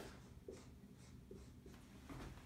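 Faint strokes of a dry-erase marker writing on a whiteboard, a few short scrapes over a quiet room.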